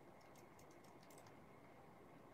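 Faint typing on a computer keyboard: a quick run of light clicks over about the first second, then only near-silent room tone.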